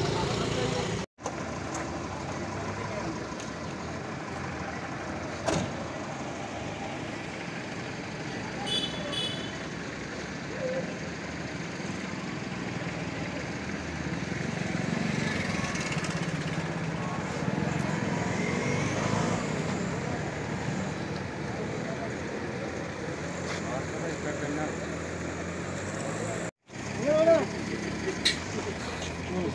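A vehicle engine running steadily under street noise, with voices in the background; the sound drops out briefly twice.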